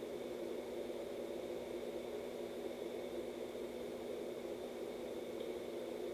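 Steady room noise: a low hum and hiss with a few faint constant tones, unchanging throughout.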